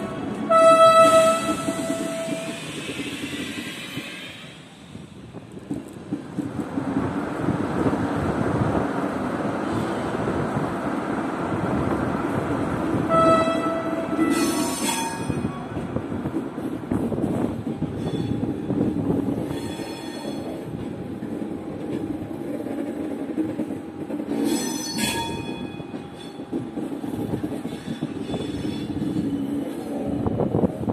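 TGV high-speed trains rolling slowly by with a steady low rumble, sounding their horns: a blast about a second in, another at about the middle, and a shorter one about five seconds before the end.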